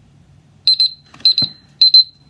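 Smartphone countdown timer alarm going off as the timer reaches zero: clusters of rapid high-pitched beeps, about two clusters a second, starting well under a second in. A brief low knock comes partway through.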